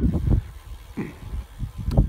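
Wind buffeting the microphone of a camera carried on a moving bicycle: an uneven low rumble, with a sharp click near the end.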